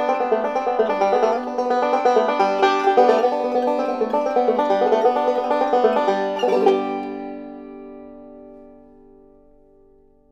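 Five-string banjo picking a quick run of notes to close the song, ending on a final chord about six and a half seconds in that rings on and fades away.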